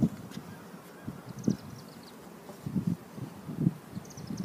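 Honeybees buzzing in short passes close to the microphone, the loudest right at the start and others about one and a half and three seconds in. A small bird twitters briefly in the middle.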